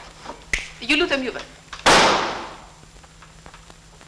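A single loud, sharp crack about two seconds in, dying away over about a second.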